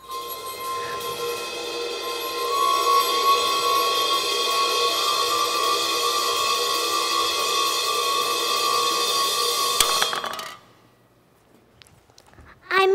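A sustained, shimmering musical sound cue: a held chord of steady tones with a bright, cymbal-like shimmer on top. It swells a couple of seconds in and stops abruptly about ten seconds in. It is the stage effect marking a display of the power to move things with the eyes.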